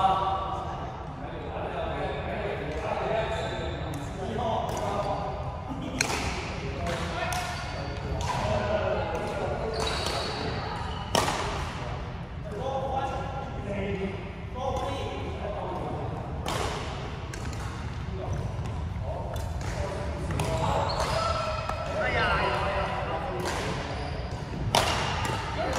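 Badminton rally: sharp racket strikes on the shuttlecock, irregularly about once a second from a few seconds in, echoing in a large sports hall, over the murmur of players' voices.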